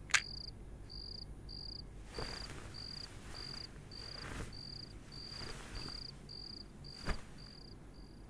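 Cricket chirping steadily, a short high chirp about twice a second. A sharp click sounds just after the start and another about seven seconds in, with soft rustles in between.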